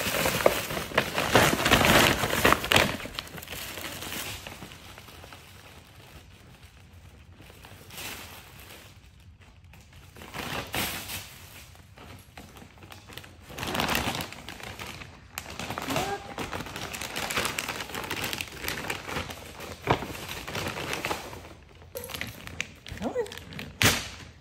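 Tissue paper rustling and crinkling in irregular bursts as a Boston terrier digs his nose and paws into a gift bag. The rustling is loudest in the first few seconds and flares up again about halfway through.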